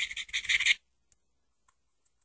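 Scratchy rubbing and dabbing against a painted surface as grass strands are worked into the paint. It stops just under a second in, leaving near silence with a few faint ticks.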